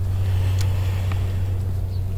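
A steady low hum with light background noise, and a couple of faint clicks.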